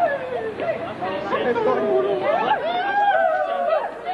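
People talking over one another: indistinct overlapping conversation.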